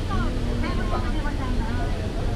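Passengers' chatter on the deck of a pirate-style sightseeing ship, over the steady low rumble of the ship under way.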